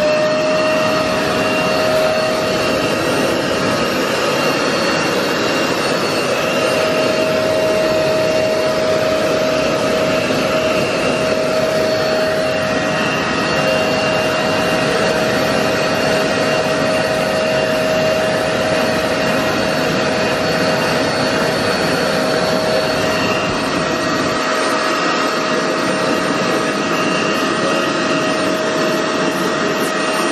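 Vax carpet washer's motor running steadily, a high even whine over a rush of suction air, as its hand tool is worked over stair carpet.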